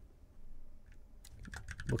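A few quiet keystrokes on a computer keyboard as a short command is typed.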